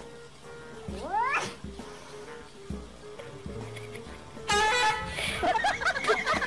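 A cat meowing over background music: one short rising meow about a second in, then a loud, longer wavering cry from about four and a half seconds on.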